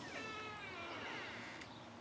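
A faint animal call, drawn out and falling slowly in pitch for about a second and a half.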